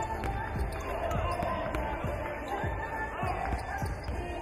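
A basketball dribbled on a hardwood gym floor, a string of bounces with sneakers squeaking now and then, under players' shouts in a large hall.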